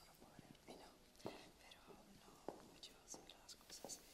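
Faint whispering at close range: an interpreter whispering a translation of a question to the person beside her, with soft hissing s-sounds.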